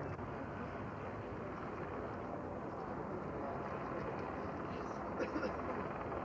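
Steady noise of the Beriev A-40 Albatros amphibian's jet engines as it runs along the water, with faint voices of onlookers.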